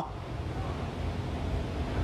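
A steady low rumble of background noise with a faint hiss in a pause between speech.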